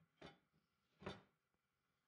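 Two faint, brief handling sounds about a second apart, as wood strips and a glue bottle are moved about during a glue-up.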